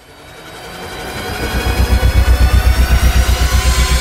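Cinematic trailer-style riser: a noisy swell with pitches sweeping upward over a fast, low pulsing throb, growing louder over the first two seconds and then holding loud.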